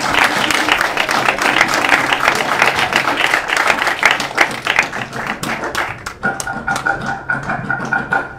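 Audience applauding, many hands clapping, thinning out about six seconds in as a steady held musical tone starts.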